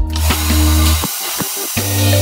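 Hand-held hair dryer blowing air steadily, under background music with a steady bass beat.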